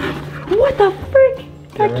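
Short, excited wordless vocal exclamations over background music with a steady low held note.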